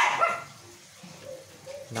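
A dog barks once, sharply, right at the start, followed by faint quieter sounds.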